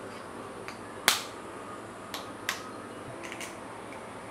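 A spoon cracking the shell of a boiled egg: one sharp crack about a second in, then a few lighter taps and clicks of shell.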